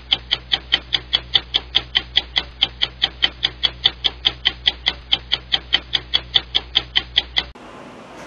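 Clock ticking as a sound effect: a fast, even train of crisp ticks, about four a second, over a low steady hum. It cuts off suddenly near the end.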